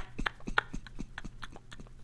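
A man laughing quietly and breathlessly: a quick run of short clicking pulses, about four or five a second.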